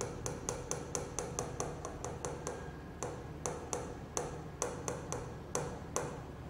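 A rapid series of sharp, light clicks, about three a second, from repeated taps on the undo button of a touchscreen whiteboard, each tap stepping back one stroke of the drawing.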